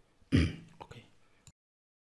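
A short, rough throat-clearing sound about a third of a second in, fading quickly, followed by a few faint clicks. Then the sound cuts off to silence.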